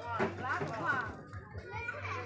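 People's voices talking, over a low steady hum; the voices fade about halfway through.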